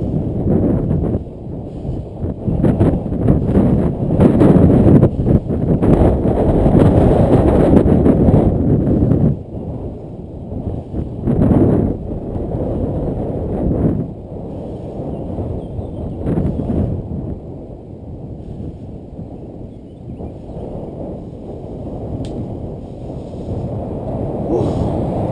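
Wind buffeting the microphone of a camera riding on a moving bicycle: a low rushing noise that gusts up and down, strongest in the first nine seconds and easing off in the second half.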